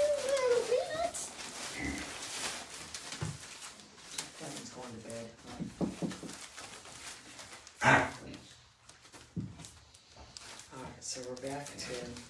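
Young puppies whining and whimpering in short, wavering high calls, with one louder sharp yelp about eight seconds in.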